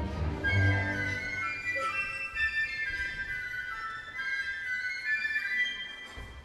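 Orchestra playing: a few low held notes in the first second give way to high, sustained melodic lines that shift slowly in pitch.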